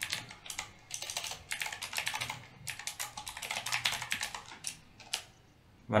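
Typing on a computer keyboard: a quick, uneven run of keystrokes that stops about five seconds in.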